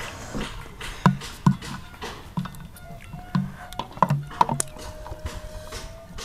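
Close-miked chewing and mouth sounds of someone eating chicken heads, coming in short irregular bursts with a few small clicks, over faint background music.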